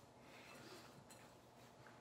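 Near silence, with only faint sounds of a spoon stirring a dry mix of oats, ground flax, walnuts and chocolate chips in a glass bowl.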